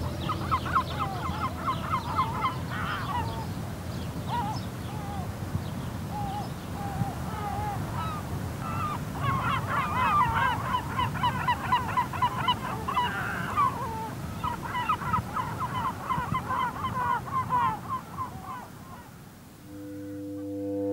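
A flock of goose-like waterbirds calling, many short overlapping calls in bouts, thickest through the middle and second half before thinning out near the end, over a steady low background rumble.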